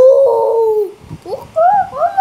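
A boy's loud, drawn-out "ooooh" of excitement, falling in pitch over about a second, followed by a short rising whoop and more sing-song vocalizing.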